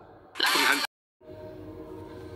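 A sudden loud burst of noise lasting about half a second, cutting off abruptly into dead silence before a fainter steady background with held tones returns.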